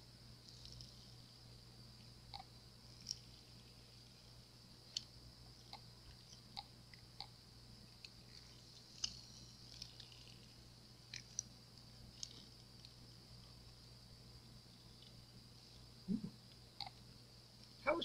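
Silicone mold being flexed and peeled to release a cured epoxy resin leaf: faint, scattered small clicks and crackles, roughly one every second or so, over a steady low hum.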